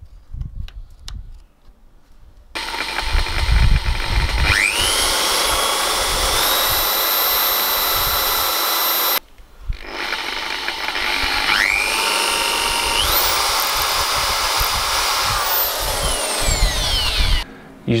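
Electric drill with a thin bit pre-drilling pilot holes for hinge screws in wood: two runs of several seconds each, the motor whine rising as it comes up to speed and then holding steady. The first run stops abruptly; the second winds down near the end.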